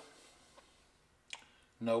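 A quiet pause broken by one short, sharp click about a second and a half in, just before a man starts speaking again.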